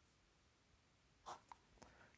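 Faint scratch of a pen on paper drawing a short line: two brief strokes about a second and a half in, otherwise near silence.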